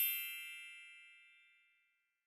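A single bell-like ding whose ring fades away over about a second and a half.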